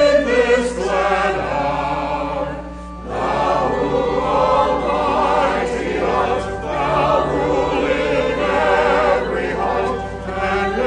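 A congregation singing a hymn together, with a short break between lines about three seconds in.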